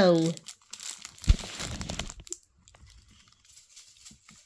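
Clear plastic food packaging crinkling as a wrapped cake is handled, with a single thump a little over a second in; the crinkling then turns faint and sparse.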